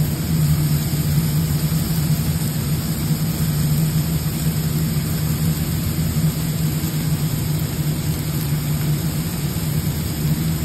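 Steady low machine hum of a commercial kitchen, with an even hiss over it that holds unchanged throughout.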